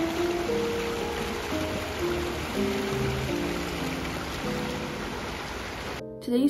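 Water running over rocks in a small stream, a steady even wash of sound, under background music of slow held notes.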